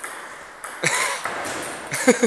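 Table tennis ball knocking on bat and table during a rally: two sharp clicks about a second apart.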